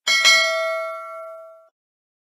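Notification-bell sound effect, played as the subscribe bell icon is clicked. A bright bell chime strikes twice in quick succession, then rings on and fades, cutting off a little before the end.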